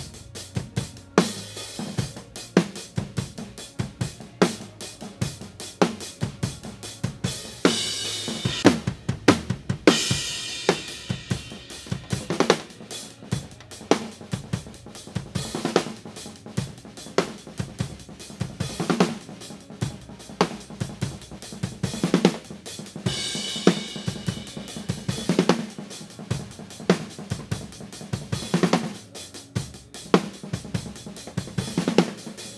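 Drum kit playing a steady groove of kick, snare and hi-hat through a live mixing console, with cymbal crashes about eight, ten and twenty-three seconds in. The snare close mic's delay is being adjusted against the overhead mics, so the snare's body thickens or thins as the two come in and out of phase.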